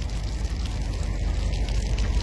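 Caterpillar excavator's diesel engine running at a steady low rumble, with a steady rushing noise over it.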